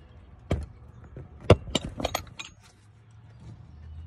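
Handling noise from a phone being propped up to record: a few sharp clicks and knocks, the loudest about a second and a half in, followed by small clinks over the next second.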